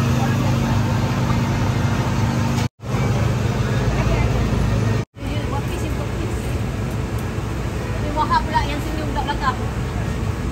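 Street ambience: a steady low rumble of traffic and engines with people talking. The sound cuts out completely twice, briefly, and a few voices rise near the end.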